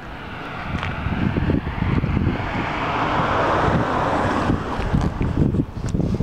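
A car driving past on the street, its tyre and engine noise swelling to a peak about three seconds in and then fading away. Wind buffets the microphone throughout.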